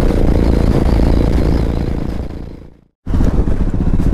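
Motorcycle engine running at road speed, heard from the rider's seat with wind rumble on the microphone. The sound fades out over about half a second, drops to silence briefly around three seconds in, then a motorcycle engine comes back abruptly with a steady, regular beat.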